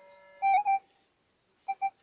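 Metal detector signalling as its coil passes over a dug hole: a low steady tone, then a louder beep just under halfway, and two short beeps near the end. The operator finds the signal unclear.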